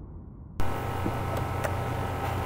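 The last of an intro sound fading away, then an abrupt switch about half a second in to a steady low electrical hum with hiss, marked by two faint clicks.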